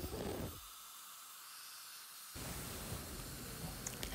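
Faint steady hiss, with the low end dropping away for a couple of seconds in the middle.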